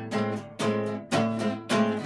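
Acoustic guitar strummed in a steady blues rhythm, about two full chords a second, each chord ringing on into the next.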